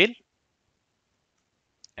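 Near silence after a spoken word ends at the start, with one faint short click just before speech resumes at the end.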